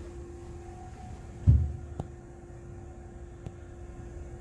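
Low, steady background rumble with a constant hum, broken by a dull thump about a second and a half in and a click half a second later.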